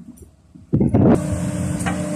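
Kobelco SK140 excavator's Mitsubishi D04FR diesel engine running at working revs while digging, with a steady whine over the drone. A faint low hum comes first, and the full engine sound cuts in suddenly about two-thirds of a second in.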